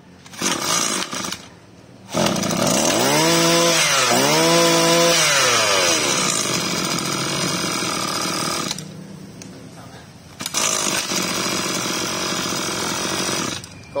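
Kioritz 21cc two-stroke brush-cutter engine started on its assisted easy-start recoil: it fires briefly about half a second in, catches about two seconds in and revs up twice to a high whine. It settles lower around nine seconds, then runs loud again from about ten and a half seconds until just before the end.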